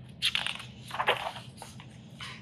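Pages of a picture book being turned by hand, the paper rustling in two quick bursts.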